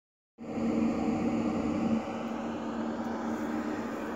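Steady mechanical drone with a low hum, a little louder for the first two seconds and then settling.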